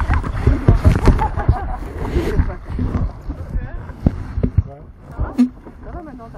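People's voices around an inflatable raft, mixed with a loud wash of water noise and knocking over the first few seconds, then scattered sharp knocks.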